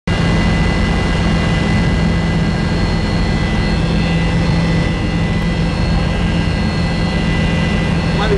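Helicopter in flight heard from inside the passenger cabin: a loud, steady engine and rotor drone with a thin high turbine whine over it.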